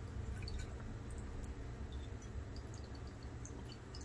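Faint, scattered small ticks of a plastic spoon scooping crystalline white powder from a glass bowl, over a steady low hum.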